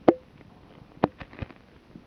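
A few sharp knocks and clicks with a short ring. The loudest comes just after the start, then a quicker group of three or four follows about a second in.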